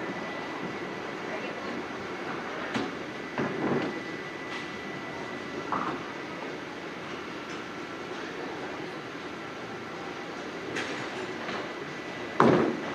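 Steady rolling rumble of a duckpin bowling alley, with balls on the lanes and pinsetter machinery running, broken by a few faint knocks of balls and pins.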